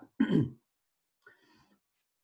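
A man briefly clears his throat just after the start, followed by a faint, short noise about halfway through.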